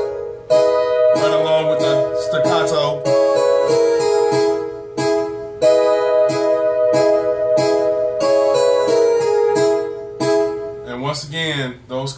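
Digital piano set to a layered harpsichord and piano-string voice, playing sustained chords struck about once a second, each ringing on while an inner note steps from chord to chord. A voice briefly joins in a little after the start and again near the end.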